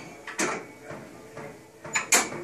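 Metal clacks from a Bodycraft functional trainer's adjustable cable pulley being moved up its column and locked in place: a sharp click about half a second in and another near the end, with faint handling noise between.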